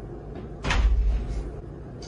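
A door shutting with a heavy thud about two-thirds of a second in, the sound fading over about a second.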